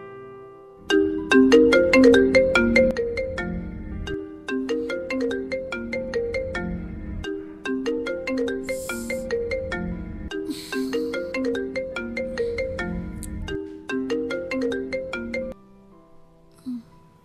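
A mobile phone ringtone: a melody of short ringing notes repeating in phrases about three seconds long. It starts about a second in and cuts off suddenly near the end, when the call is answered.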